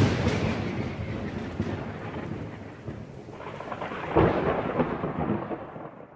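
Thunder: a loud peal that dies away slowly into a rumble, then a second, crackling peal about four seconds in, fading out near the end.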